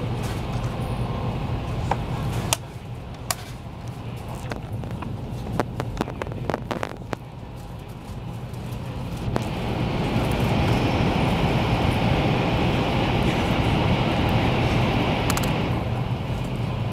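Cabin noise of a Taiwan High Speed Rail 700T electric train running at speed: a steady rumble and rush with a few sharp clicks in the middle. The noise drops about two and a half seconds in and swells louder from about ten seconds on.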